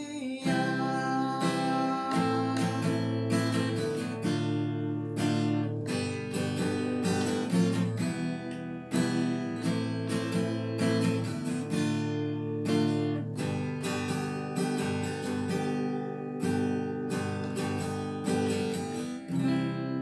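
Acoustic guitar, capoed, strummed through the closing chord progression of a pop ballad, stroke after stroke with the chords ringing between them. Near the end a final chord is struck and left to ring out.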